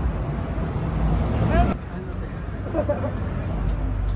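Street traffic rumbling steadily, with brief snatches of voices from the people standing close by.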